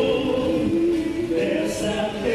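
A choir singing a slow hymn in held notes.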